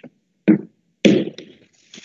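A short tick, then two louder thumps about half a second apart with a brief rustle: handling noise on an open video-call microphone.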